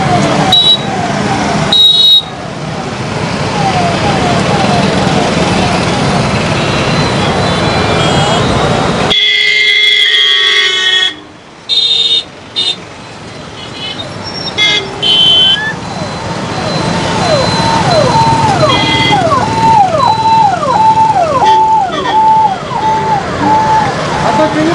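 Road convoy of cars and motorcycles with an escort siren wailing up and down over traffic noise. About nine seconds in the sound changes abruptly to a cluster of vehicle horn toots. In the last third a siren whoops repeatedly, about one and a half times a second.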